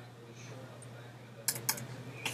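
Two quick computer keyboard key presses about a second and a half in, a fifth of a second apart: backspace deleting the letters from a search field. A faint steady hum sits underneath.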